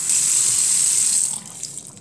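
Tap water running into a bathroom sink and splashing onto the drain; the loud rush drops off sharply about one and a half seconds in.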